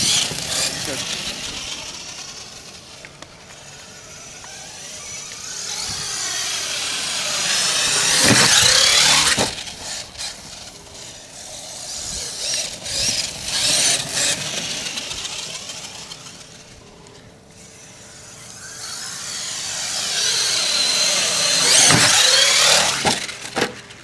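HPI Savage Flux HP brushless electric RC monster truck driven at speed, its motor and drivetrain whining and tyres scrabbling on dirt, swelling and fading as it passes near and away several times, loudest about a third of the way in and again near the end. A quick run of knocks near the end as the truck tumbles.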